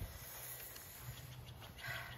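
Faint outdoor background noise with a low steady hum, and a soft brief rustle or breath near the end.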